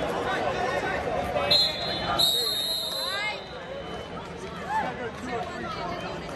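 Referee's whistle blown twice, a short blast and then a longer one, over shouting from coaches and spectators.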